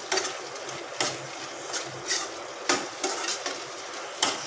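A spatula stirring and scraping an onion-tomato masala frying in a pan, with a steady sizzle. Short scrapes and knocks of the spatula against the pan come every half second to second.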